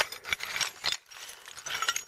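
Pieces of broken ceramic floor tile clinking and scraping against one another as they are moved by hand, a run of short irregular clicks.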